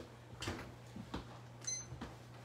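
A few light knocks and clatter of a baking tray being put into an oven, then a short electronic beep from the oven's control panel near the end, over a steady low hum.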